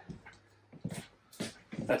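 Hinged swing-out TV mount being pivoted open, giving a few brief faint sounds about halfway through.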